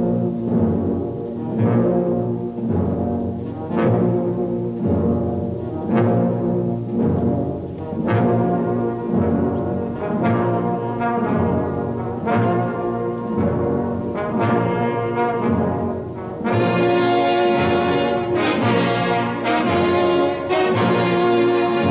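Slow, solemn brass music, trombones and trumpets with an orchestral backing, moving at a steady slow pulse; it swells fuller and brighter about three quarters of the way through.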